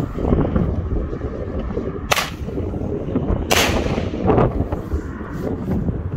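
Firework airbomb going off: two sharp bangs about a second and a half apart, the second longer and trailing off, with a weaker crack shortly after it.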